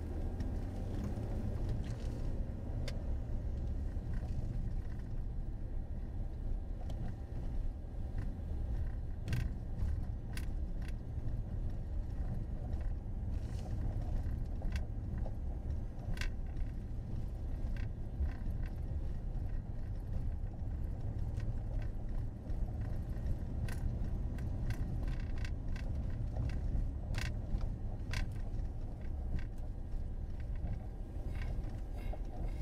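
Inside a car while driving: a steady low rumble of road and engine noise, with occasional short, light clicks and rattles scattered through it.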